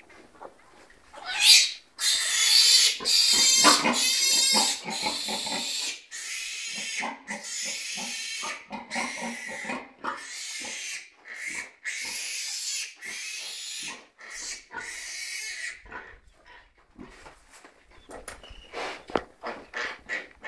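An animal squealing again and again in harsh, high cries, each about half a second to a second long, loudest a couple of seconds in and thinning out after about fifteen seconds.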